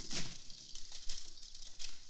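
A metal wheeled gurney being pushed and handled, making an irregular run of light rattles and clicks, loudest near the start.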